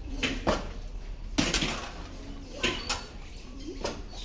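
Metal clanks and clinks from a gym weight machine being handled: a few separate knocks, the loudest about a second and a half in.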